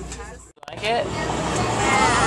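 Steady low rumble of a moving vehicle with people's voices over it, cut off by a brief dead dropout about half a second in, then picking up again.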